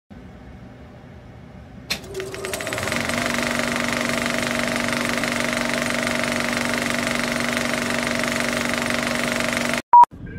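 A mechanical rattle starts with a sharp click and a quick run of clicks about two seconds in, then settles into a steady buzzing rattle. It cuts off suddenly near the end, followed by a brief beep.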